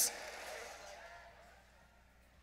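The announcer's last word echoing and dying away in a large hall over about a second and a half, with faint arena noise under it, then near silence.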